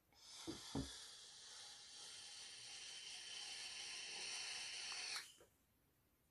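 A steady hiss lasting about five seconds, growing slowly louder before stopping suddenly, with two soft low thumps just after it begins.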